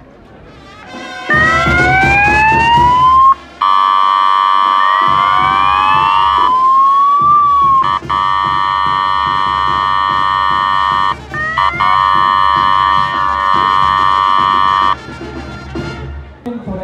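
Electronic sirens of police motorcycles switched on: a few rising wail sweeps, then a long, loud, steady buzzing horn tone. The horn tone cuts out briefly twice, with more wail sweeps rising and falling over it.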